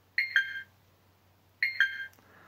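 Flysky Noble Pro transmitter's touchscreen beeping as menu items are tapped: two quick two-note beeps, a higher note then a lower one, one just after the start and another about a second and a half in.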